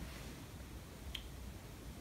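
Quiet room tone with one short, faint click about a second in.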